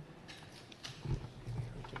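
Low, indistinct murmured voice close to the microphone, loudest about a second in. A sharp click comes at the start, with a few fainter clicks later.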